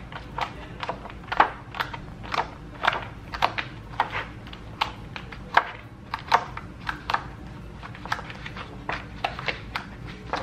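Punched cardstock pages being pressed onto the plastic discs of a disc-bound planner: an irregular run of small snaps and clicks, two or three a second, as the holes pop over the disc rims, with paper rustling and handling between them.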